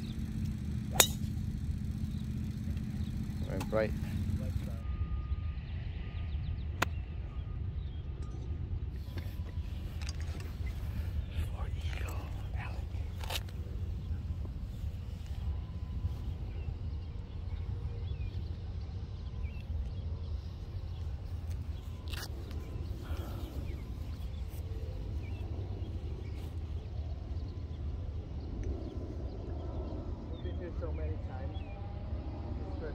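A golf driver strikes a ball off the tee about a second in: one sharp crack, the loudest sound here. After it comes a steady low rumble of outdoor background, with a few faint clicks.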